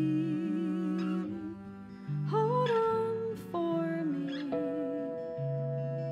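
Slow folk-pop band playing live, with acoustic guitar, upright bass and drums. A voice holds a note with vibrato for the first second or so, then a few held melody notes slide into pitch over sustained bass notes, with a couple of light drum or cymbal hits.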